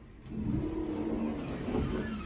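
Otis traction elevator car setting off downward: a hum from the hoist machine comes in about a third of a second in and holds steady, heard from inside the car.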